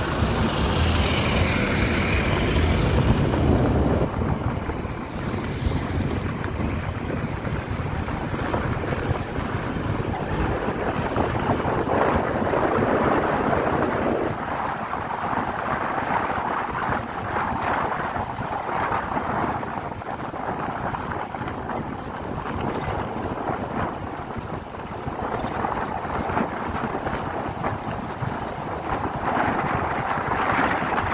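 Steady road noise from a car driving on an unpaved gravel-and-dirt road, with wind rushing over the microphone. The rumble is louder and deeper for the first four seconds, then settles into an even, fluctuating drone.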